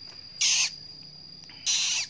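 Newly hatched Eleonora cockatoo chick giving two short, raspy, hissing begging calls, the first about half a second in and the second near the end. It is still begging for food although its crop is already full.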